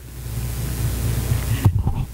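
A rushing hiss on the microphone for about a second and a half, followed by a brief vocal sound near the end.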